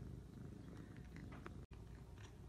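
Calico cat making a low, rough, purr-like rumble, the strange noise it makes at birds outside the window. It breaks off for an instant near the end.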